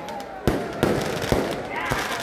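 Several sharp bangs at irregular intervals, about four in two seconds, with an echo over a background of open-air hubbub.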